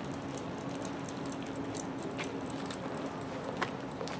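Outdoor background noise: a steady low hum with faint, scattered light clicks and rustles.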